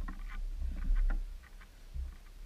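Lake water splashing and dripping around a metal swim ladder as a wet swimmer climbs out: a run of short, uneven splashes and drips over a low rumble.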